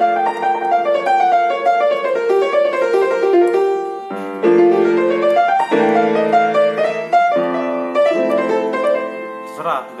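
Yamaha piano played: fast right-hand runs, a lick stepping up and down, over held left-hand chords. The playing breaks off briefly about four seconds in, then resumes with new chords that change several times.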